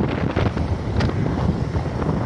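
Wind buffeting the microphone of a camera riding along at road speed, a steady rushing rumble with road noise underneath.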